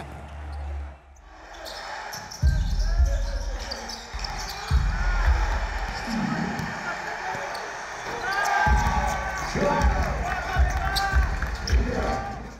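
A basketball being dribbled on a hardwood court, with repeated sharp low thuds in several runs that start about two and a half seconds in and continue through the end. Voices call out in the echoing hall around them.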